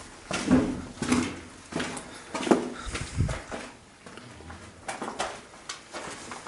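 A woman's short, breathy gasps and whimpers in quick bursts, mixed with scuffing footsteps in a small, echoing room.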